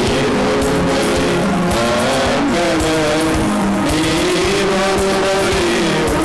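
Music from a Tamil Christian devotional song: a gliding melody over drums.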